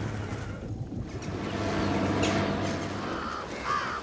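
Crows cawing, with a clear call near the end, over a low steady hum.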